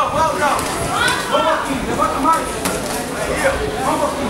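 Voices calling out around a boxing ring during a bout, with a few sharp knocks scattered through.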